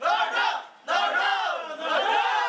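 A group of men shouting a ritual cry together, in long calls that rise and fall in pitch, with a short break after the first.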